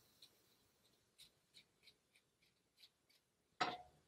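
Small scissors snipping the front hairs of a lace front wig to make baby hairs: about ten faint, quick snips spread through, with a brief louder noise near the end.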